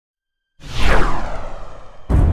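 A whoosh sound effect over a deep rumble, the sting of an animated logo intro: it starts suddenly about half a second in, sweeps down in pitch and fades away.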